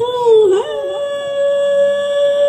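A woman singing unaccompanied into a microphone: a short wavering note that dips, then one long note held steady from about half a second in.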